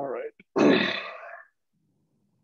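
A person's short wordless vocal sounds, such as a grunt: a brief one at the start, then a louder one about half a second in that lasts about a second.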